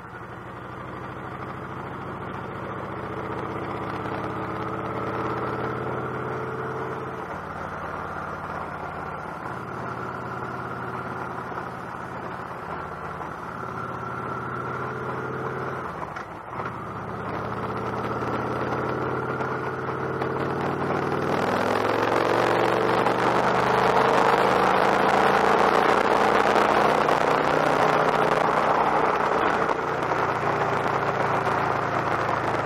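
Victory Cross Roads motorcycle's big V-twin engine running under way, its pitch stepping up and down with throttle and gear changes, then climbing steadily from about two-thirds of the way through as the bike accelerates hard to get past traffic. Wind rush over the camera grows loud as speed builds.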